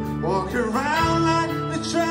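Live band playing: electric and acoustic guitars strummed over a drum kit. About a quarter of a second in, a note slides up and is then held.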